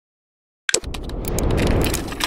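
Intro sound effect for an animated logo. It starts suddenly about two-thirds of a second in, a noisy mechanical rumble with rapid sharp clicks that grows louder.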